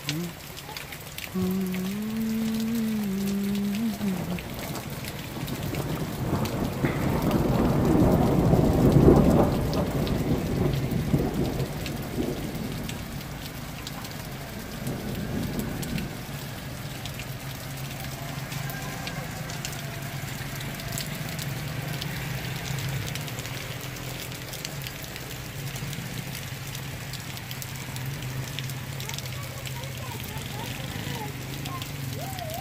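Steady rain falling, with a low rumble that swells and fades between about six and twelve seconds in. In the first few seconds there is a short two-note pitched sound, and a low steady hum carries on through the second half.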